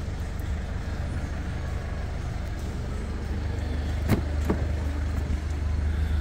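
Steady low hum of a Mercedes-Benz C220's 2.1-litre CDI four-cylinder diesel idling, heard from inside the cabin, with two light clicks about four seconds in.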